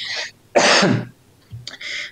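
A man coughing: a short cough, then a louder one about half a second later.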